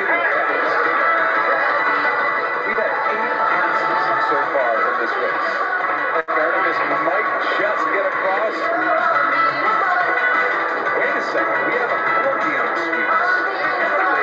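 Soundtrack of an America's Cup sailing race broadcast: music with a commentator's voice mixed in, steady and dense, relayed through a video call. It cuts out for an instant about six seconds in.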